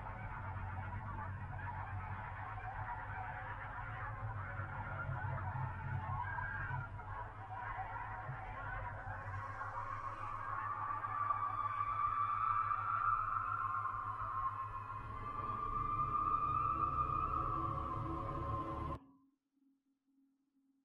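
Soundtrack of a grainy horror art video: a low rumbling drone under a wavering, honking tone that swells louder in the second half, then cuts off abruptly about 19 seconds in as playback is paused.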